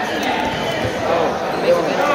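Spectators talking and calling out over one another in a gymnasium, with a couple of dull thuds about a second in.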